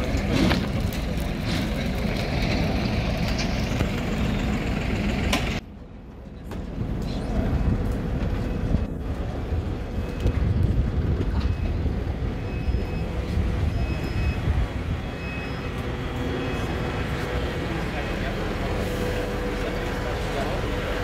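Outdoor ambience on an airport apron: a steady low rumble of wind and distant machinery with indistinct voices of people walking and talking. The sound drops away abruptly for about a second near six seconds in, then returns.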